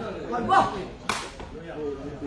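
Sharp smack of a sepak takraw ball being kicked, clearest about a second in, over the voices of the crowd.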